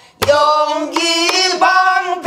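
Woman singing a pansori danga in a strained, held-note vocal style, accompanying herself on a buk barrel drum. A single drum stroke falls just after the start, and the voice then holds long wavering notes.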